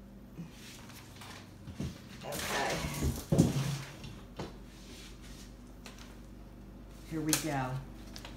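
A woman's voice making short, murmured sounds that the recogniser did not catch as words, twice: a longer bout around two to four seconds in, with some rustling, and a short falling murmur near the end. A low, steady hum runs underneath.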